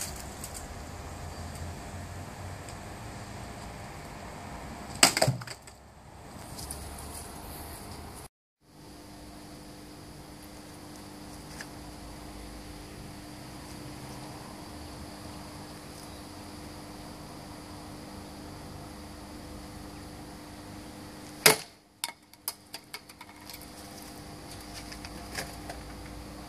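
Katana blade (a Böker Magnum Blind Samurai) chopping into an upright wooden stake, two sharp strikes about sixteen seconds apart; the second is followed by a few light knocks.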